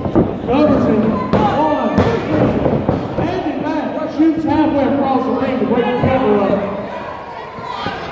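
Wrestlers' bodies hitting the ring canvas with a few thuds: two at the start, one about two seconds in and a loud one just after four seconds. Shouting voices run throughout.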